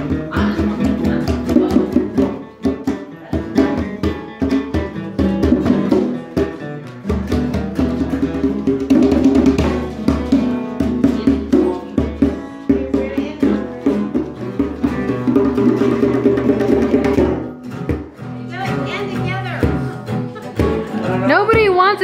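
Several acoustic guitars strummed together in an informal jam, with a drum keeping the beat underneath.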